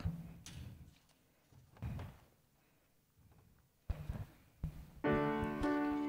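A few soft knocks in a quiet room, then about five seconds in a keyboard starts playing sustained chords: the introduction to the announced hymn.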